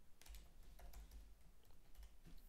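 Faint typing on a computer keyboard: a quick run of soft keystrokes.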